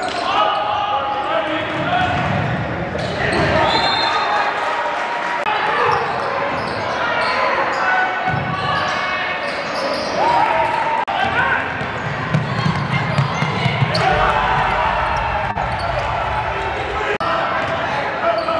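Live sound of a high school basketball game in a gym: the crowd's overlapping voices and shouts, with the basketball bouncing on the hardwood court.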